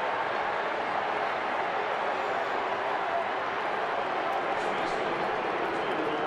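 Steady din of a ballpark crowd, many voices blended into an even wash of noise.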